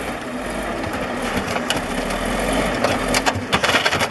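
Caterpillar D8 crawler bulldozer's diesel engine running hard under load as the machine works its tracks over a crushed pickup truck. Sharp clanks and cracks come through once a little before the middle and again in a cluster about three seconds in.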